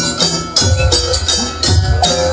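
Live jaranan dance music: a wavering melody line over percussion, with quick regular jingling strikes and a low drum beat.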